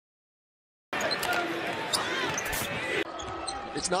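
Silence for about the first second, then basketball game audio starts suddenly: a ball bouncing on the court amid arena noise and a commentator's voice. The sound changes abruptly about three seconds in, cutting to another stretch of game audio.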